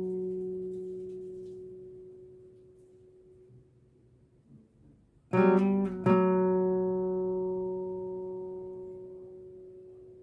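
Steel-string acoustic guitar in drop D tuning: a single note on the fourth string, fourth fret, rings and fades away. About five seconds in, a new note is plucked, slid up a fret and back, then struck again and left ringing as it slowly dies away.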